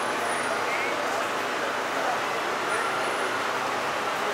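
Steady street traffic noise with faint voices mixed in.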